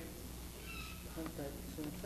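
Quiet, untranscribed talking over a steady low electrical hum.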